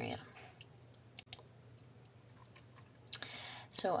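A pause with a few faint clicks, then a short intake of breath shortly before speech resumes.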